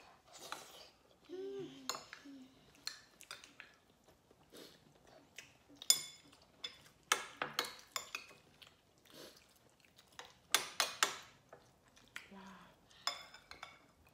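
Spoons and chopsticks clinking and scraping against ceramic bowls as people eat: scattered sharp, ringing clinks, the loudest about six seconds in and a quick run of them around ten to eleven seconds.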